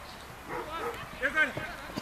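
Short shouted calls from people on a football training pitch, several in quick succession, the loudest about halfway through.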